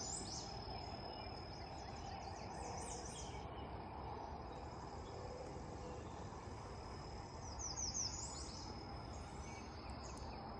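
Morning outdoor ambience: a steady high insect trill throughout, with a bird calling in runs of quick sweeping notes, about three seconds in and again near eight seconds, over a low, even background rumble.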